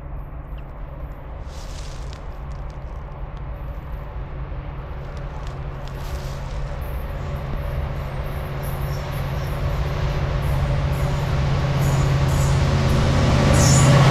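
Approaching Norfolk Southern freight train with an EMD diesel locomotive in the lead, running at about 49 mph: the locomotive's low engine drone grows steadily louder, with the lead unit arriving near the end.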